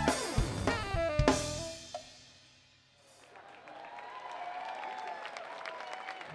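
A live band with drum kit, bass and pitched instruments playing the end of a funk number: drum and cymbal hits under held notes, closing on a final hit about a second and a half in that rings out and fades. Only faint sound follows.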